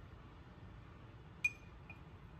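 A utensil clinks once against a glass yogurt pot about one and a half seconds in, leaving a short ringing note. A fainter tap follows just before the end.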